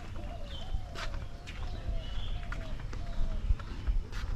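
Footsteps of someone walking on a concrete bridge, with low wind rumble on the microphone. Behind them a short rising-and-falling call repeats about twice a second, and a few brief high chirps come through.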